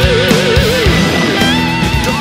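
Hard rock track with an electric guitar lead over drums and bass. The guitar holds a note with wide vibrato that slides down, then takes up a higher vibrato note about halfway through.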